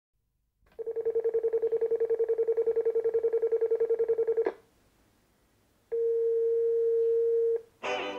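Electronic telephone ringer trilling in a rapid warble for about four seconds, then, after a short pause, a single steady electronic tone lasting about a second and a half.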